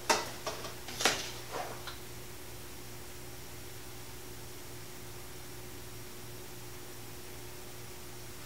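Several short clatters and clinks of welding gear being handled in the first two seconds, the loudest right at the start and about a second in, over a steady low hum that runs on alone afterwards.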